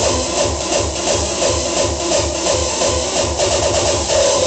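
Hardcore electronic dance music from a DJ set, loud, with a fast, steady kick drum beat and a repeating high synth riff.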